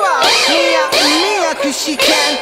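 Song passage made of overlapping meowing cries: short pitched glides that rise and fall, several a second, layered over the track's backing.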